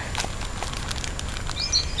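Goats nibbling and mouthing a plastic packet: faint, scattered clicks and rustles over steady low background noise.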